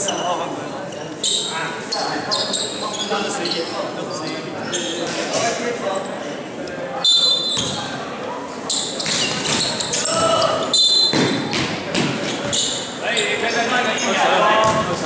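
Basketball game sounds in a large echoing gym: a basketball bouncing on the wooden court, short high squeaks of sneakers, and the voices of players and spectators.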